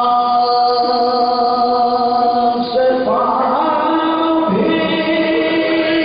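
Soazkhwani: male voices chanting an Urdu marsiya (Shia elegy) without instruments, in long drawn-out notes. The melody steps up in pitch about halfway through and shifts again shortly after.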